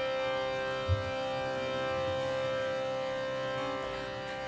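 Harmonium holding one steady drone chord of several sustained reed notes, with a brief low thump about a second in.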